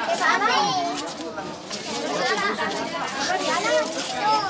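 Children's high-pitched voices calling and chattering over a background of adult conversation in a crowd.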